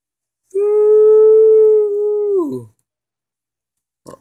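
A child's voice holding one long steady note for about two seconds, then sliding down in pitch as it stops: a mouthed sound effect made while playing with a toy tank.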